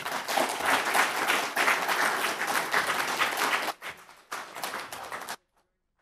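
Audience applauding. The applause thins out after about four seconds to a few scattered claps, then cuts off suddenly to silence.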